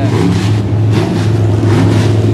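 Midwest modified dirt race car's V8 engine running at low speed as the car rolls slowly along, a steady low drone.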